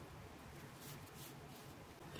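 Near silence: room tone with a few faint, soft rustles about a second in, from hands handling a knitted wool bootie while sewing it with a needle.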